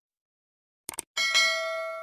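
Two quick clicks about a second in, then a bright bell chime that rings on and slowly fades. This is the click-and-notification-bell sound effect of an animated subscribe button.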